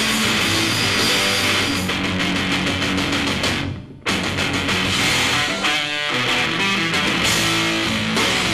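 Live rock band playing a loud instrumental passage led by electric guitar, with bass and drums. A little past halfway the sound dies down briefly, then comes back in sharply.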